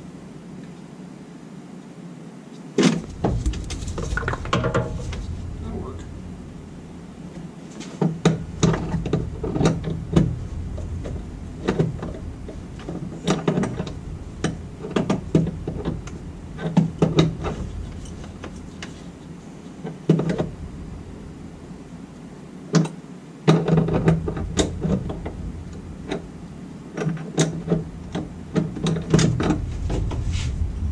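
Hand tools clicking and knocking against the metal fittings of a transfer-case shifter bracket under a Jeep, in irregular strikes, while nuts are worked on. A low rumble comes and goes in two long stretches.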